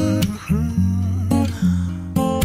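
Korean R&B song: strummed acoustic guitar chords over a steady bass line, with a gliding melody above.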